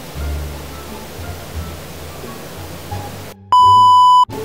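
Faint background music with a soft low beat, then about three and a half seconds in a loud, steady, high beep, an edited-in bleep sound effect like a TV test tone, which cuts off suddenly.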